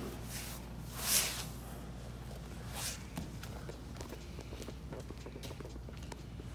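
Jiu-jitsu gi fabric swishing and bodies shifting on a foam mat as a guard pass is finished, with a louder swish about a second in and another near three seconds, then soft bare footsteps on the mat.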